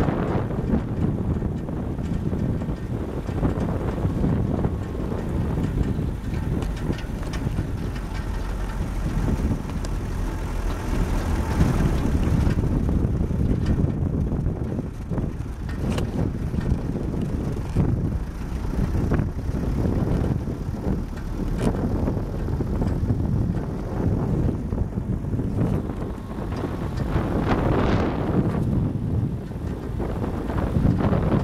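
Vehicle driving along an unpaved dirt road, heard from inside the cab: a steady low rumble of engine and tyres on the rough surface, with occasional knocks and rattles over bumps.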